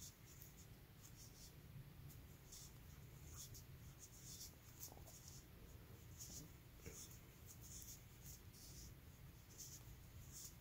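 Faint, soft scratching of yarn drawn through and over a crochet hook as double crochet stitches are worked, irregular, about once a second, over a low room hum.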